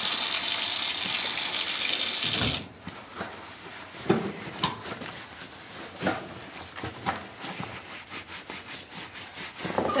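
Tap water pouring from a kitchen faucet onto a soaked wool cushion in a stainless steel sink, shut off abruptly about two and a half seconds in. After that come a few faint wet handling sounds as the soapy wool cushion is pressed by hand.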